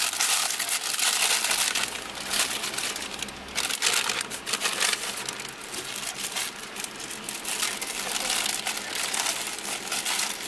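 Paper burger wrapper crinkling and rustling in a steady run of irregular crackles as it is unwrapped by hand.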